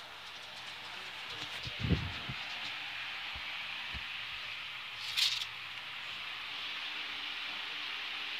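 A phone being handled and moved about: a low thump about two seconds in, two short knocks, and a brief rustle about five seconds in, over a steady hiss.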